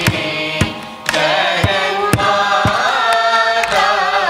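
A group of voices singing a Carnatic kriti in unison, with violin and regular mridangam strokes about two a second. A held note fades into a short dip about a second in, then the ornamented melody resumes.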